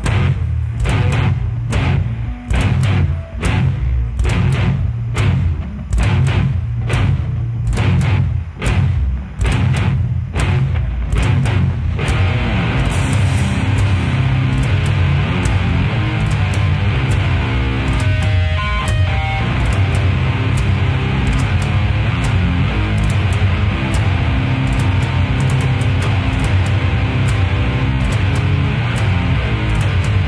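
Death metal band playing live: distorted Telecaster-style electric guitar, bass and drums. It opens with a riff punctuated by heavy accents about once a second, then about twelve seconds in the full band breaks into a dense, fast, unbroken section.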